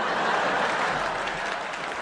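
Audience applauding after a punchline, a dense steady clapping that eases off slightly toward the end.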